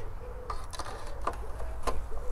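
Plastic dipstick of a Briggs & Stratton Quantum XM 35 mower engine being pushed back into the oil filler tube and seated: a few light clicks, the sharpest near the end.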